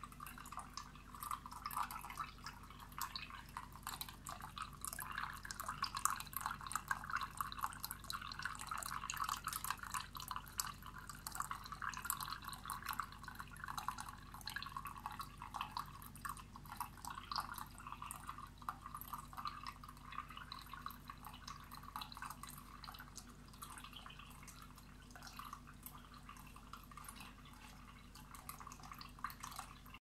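Small tabletop waterfall fountain made from a broken vase, running: water trickling and pattering steadily from several spouts into the foamy basin below, over a faint steady low hum.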